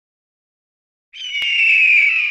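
Intro logo sound effect: silence, then about a second in a single hoarse, high screech-like tone that slides slightly downward and is still sounding at the end, with a sharp click just after it starts.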